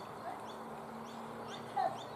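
Open-air ambience with birds chirping over and over in short falling notes, and one brief loud call near the end.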